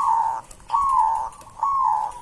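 Zebra dove (perkutut) cooing: a run of short, clear, even-pitched coo notes, about one a second, each dropping slightly at its end.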